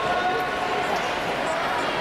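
Steady crowd chatter in a large indoor pool hall: many voices talking at once, blurred together by the hall's echo, with no single speaker standing out.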